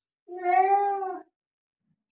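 Domestic cat giving one long, drawn-out meow of about a second, starting a moment in, while it is restrained on an examination table for a blood draw.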